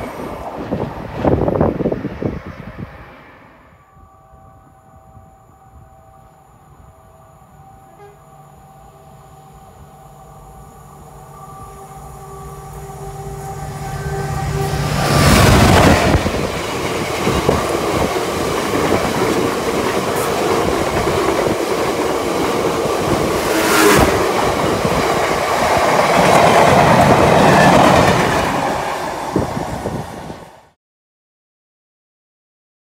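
The tail of a passing train is loud for the first few seconds. A Class 66 diesel locomotive with a two-stroke V12 then approaches, its steady engine note growing louder until it passes loudly about halfway through. A long rake of loaded cement tank wagons follows, rolling past with continuous wheel rumble and rail-joint clacks.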